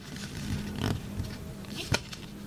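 Origami paper rustling as it is handled and folded, with a sharp crackle of the paper creasing near the end.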